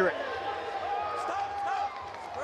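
Men's voices shouting in a fight arena, with one held call near the middle, over steady crowd noise.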